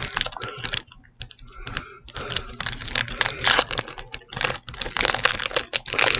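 Foil Pokémon TCG booster pack wrapper crinkling and being torn open by hand: a rapid run of crackles, with a short lull about a second in.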